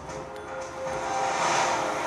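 A whooshing swell from the show's soundtrack, rising steadily in loudness, with a faint steady tone underneath, heard through the theatre's speakers.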